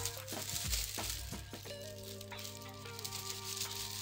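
Plastic and paper wrapping crinkling as a roll of ready-made filo pastry sheets is unrolled by hand, with a few light knocks in the first second and a half. Soft background music with held notes plays underneath.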